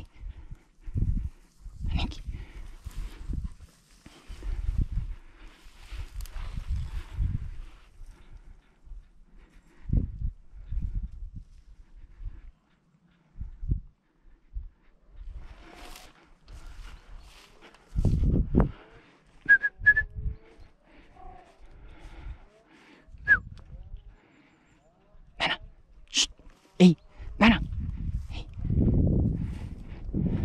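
Footsteps and brush rustling of someone walking through scrubland, with irregular low thumps on the microphone. A brief high chirp comes about twenty seconds in, and a few sharp clicks near the end.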